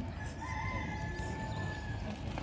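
A rooster crowing faintly: one long call of about a second and a half, stepping up slightly in pitch near its start, over low background noise.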